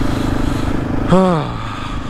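Motorcycle engine running steadily. About a second in, a short human groan falls in pitch over it.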